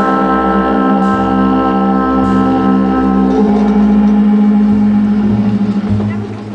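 Live jazz band playing an instrumental passage: trumpet and bass clarinet hold long notes over light drums. A strong low note comes in about halfway through and fades near the end.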